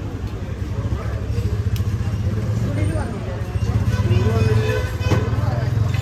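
Street ambience: a steady low engine hum of traffic, with people talking indistinctly over it.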